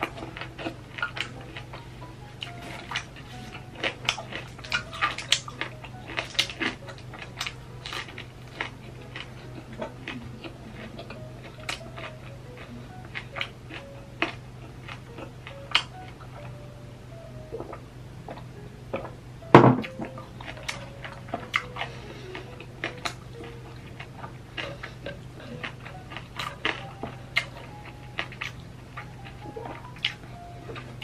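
Close-up eating sounds: crunching and chewing of crispy pork belly skin, many short sharp clicks scattered through, with one loud knock a little after the middle. Faint cheerful background music plays underneath.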